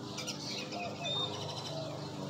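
A few faint, short bird chirps about a second in, over a steady low background hum.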